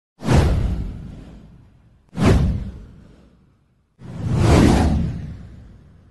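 Three whoosh transition sound effects with a deep low end: two sharp swooshes that each die away over about a second and a half, then a third that swells up about four seconds in and fades out.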